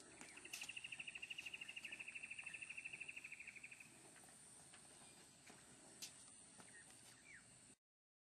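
An animal's high trill of about a dozen even pulses a second, lasting about three seconds and fading away, over a faint steady high whine and a few light clicks. The sound cuts off just before the end.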